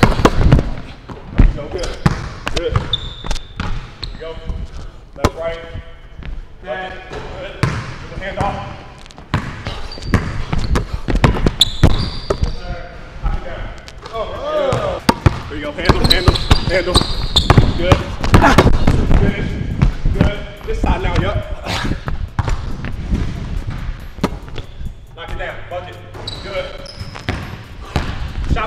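Basketball dribbled on a hardwood gym floor: many sharp bounces scattered throughout, mixed with voices.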